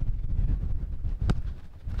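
Low rumble of wind on the microphone, fading after about a second, with a single sharp thud of a football being struck about 1.3 seconds in.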